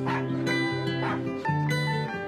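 A puppy barking twice, about a second apart, over gentle plucked-string music.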